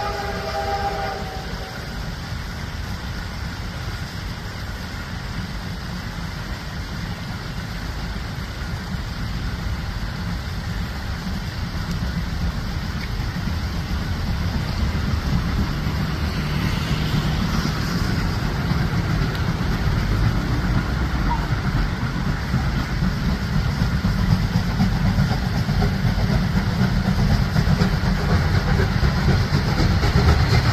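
A train led by the CT273 steam locomotive approaching. A multi-tone whistle blast cuts off about a second in, then the low rumble of the train grows steadily louder as it draws near.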